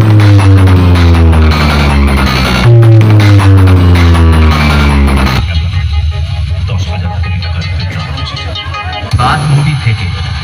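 Very loud music from a stacked DJ sound-box speaker rig, heavy in bass, with deep notes that slide down in pitch twice, at the start and about three seconds in. About five seconds in, the upper part of the music drops away, leaving a low bass rumble.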